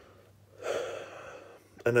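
A man drawing in a breath through the mouth, about a second long, starting about half a second in, followed by the start of speech near the end.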